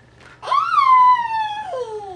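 One long, loud, high-pitched wail from a human voice. It rises briefly, then slides steadily down in pitch, and the voice drops suddenly lower partway through the fall.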